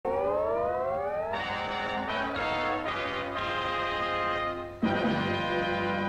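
Brass-led orchestral title music: a rising glide for about the first second, then a run of held chords, with a fuller, lower chord coming in near the five-second mark.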